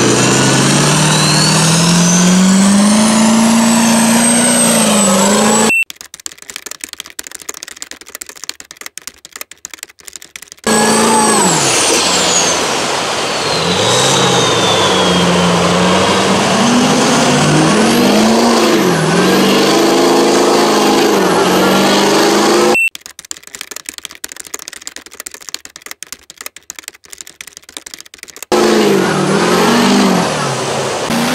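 Duramax diesel V8 in a lifted mud truck revving hard under load in deep mud, its pitch rising and falling as the throttle is worked, with a high whistle rising and falling above it. The engine sound drops out twice, for about five seconds each time, near the first third and near the end.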